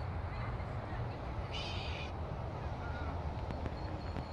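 Steady low outdoor rumble, with one short high bird call about one and a half seconds in.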